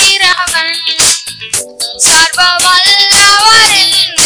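Two boys singing a song together into microphones, accompanied by a Yamaha PSR-S775 arranger keyboard playing chords over a steady drum rhythm.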